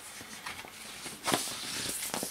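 Paper rustling and sliding as a large printed lyric sheet is drawn out of a vinyl album's sleeve, with one louder scrape a little past halfway.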